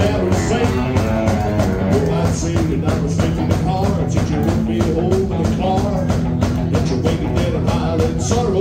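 Rockabilly band playing live at a fast, steady beat: electric guitars and drum kit, with a male voice singing over them.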